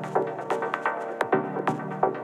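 Techno from a DJ mix: sharp percussion hits, several a second, over sustained synth chords.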